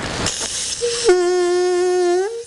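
Homemade drinking-straw duck call (a flattened plastic straw with a V cut into its end as a reed) blown hard: a breathy hiss at first, then just under a second in the reed catches into a steady, reedy tone rich in overtones that drops a step in pitch and holds. The call only works a little bit.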